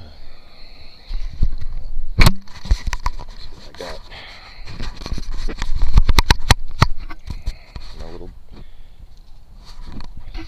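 Body-worn camera being handled and repositioned: a rapid string of sharp clicks and knocks with rubbing and rumble on the microphone, densest around two and six seconds in, with brief faint voices in between.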